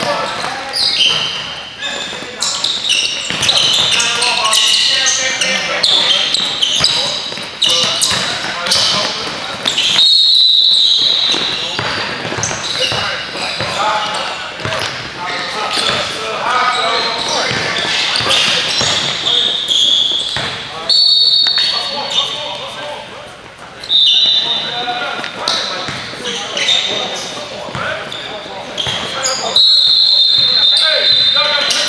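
Indoor basketball game in a gym: a basketball bouncing on the hardwood, with players' voices echoing around the hall. Several brief high squeals stand out, about a third of the way in, twice around two-thirds through, and at the end.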